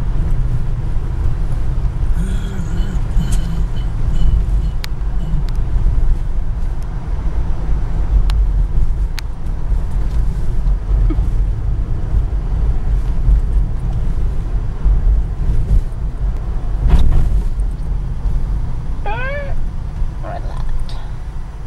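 Wind buffeting the camcorder microphone and car road noise, a loud uneven rumble, as the camera is held up out of a moving car's sunroof. There are a few sharp clicks, a thump about 17 seconds in, and a short run of rising squeaks near the end.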